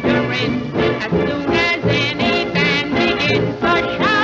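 1930s Hollywood film-musical studio orchestra playing a brisk passage with a steady beat and wavering vibrato high notes.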